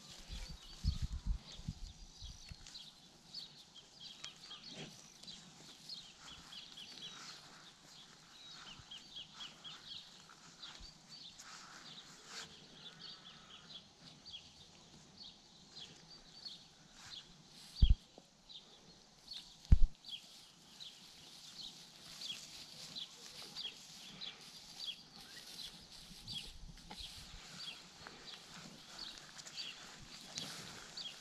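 Small birds chirping over and over, with cattle moving and grazing on pasture close by. There are a few low bumps at the start and two loud thumps about two seconds apart a little past halfway.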